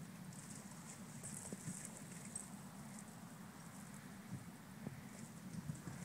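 Faint outdoor noise: a steady low rumble like wind on the microphone, with light rustling and a few soft taps near the end.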